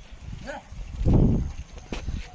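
Two bullocks pulling a cart along a dirt lane: hooves and cart wheels rumble, swelling louder a little after the middle. A short voice call rings out about half a second in.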